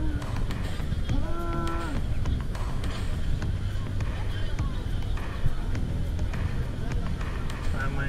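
Busy bathing-pool ambience: water sloshing and splashing with bathers' voices in the background and a steady low rumble. About a second in, a voice holds one long note.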